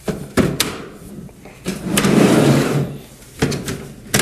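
Plastic sections of a TJ4200 ceiling air inlet being slid together and snapped into place: a few sharp clicks, a louder sliding scrape of about a second around the middle, then a couple more clicks near the end.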